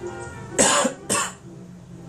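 A man coughs twice into his hand, two short loud coughs about half a second apart.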